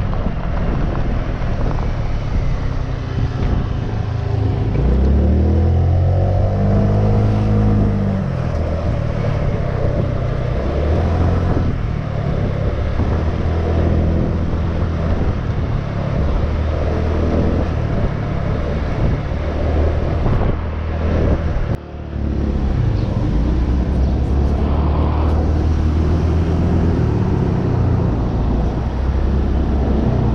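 Motorcycle engine running under way while being ridden. About five seconds in, its note climbs as the bike accelerates, then it settles into a steady cruise, with a brief drop in level later on.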